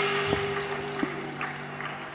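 The band's last chord, on electric guitars, ringing out and fading away, with two sharp knocks during the decay.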